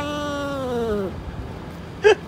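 A domestic cat's long, drawn-out meow that slides down in pitch and trails off about a second in.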